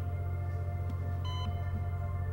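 Eerie ambient synthesizer score: a deep steady drone under sustained higher tones, with a short high electronic beep about a second in.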